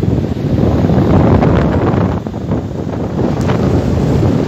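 Loud wind buffeting the microphone: a steady, low, rushing noise.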